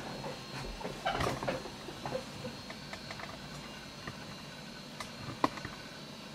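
Faint steady background hum with scattered light clicks in the middle and two sharper ticks near the end.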